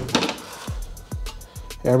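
Light metallic clinks and knocks from a welded aluminum hatch lid being turned over and handled: a quick cluster right at the start, then a few scattered small knocks.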